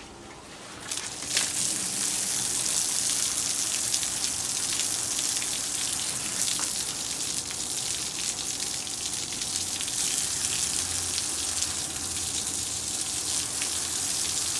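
Garden hose spraying water against a stucco wall, a steady hiss of spray and splashing that starts about a second in, rinsing off a brushed-on bleach cleaning solution.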